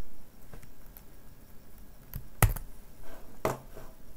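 A few separate sharp clicks of computer keyboard keys being pressed, the loudest about halfway through.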